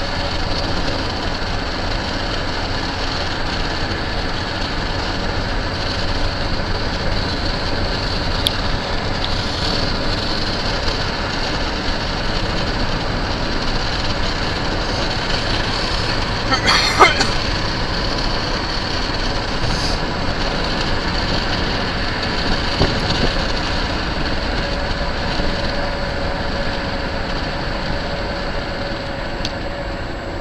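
Steady road and tyre noise heard from inside a car moving at highway speed. About seventeen seconds in, a brief sharp clatter is the loudest sound.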